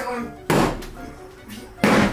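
Two axe blows striking wooden bedroom wall panelling, a little over a second apart, each a sharp hit with a short ring after it.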